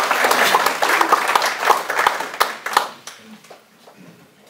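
A small audience applauding by hand, the claps thinning out and stopping about three seconds in.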